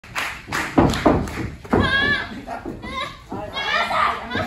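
Two heavy thumps about a second in, then high-pitched women's voices shouting and calling out, echoing in a large hall.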